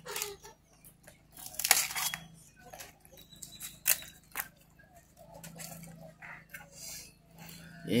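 Banana leaves rustling and crinkling as they are handled and torn for wrapping tamales, with scattered small clicks and knocks from work at the table. The longest rustle comes about two seconds in, and a sharp click near the middle. A faint steady hum lies underneath.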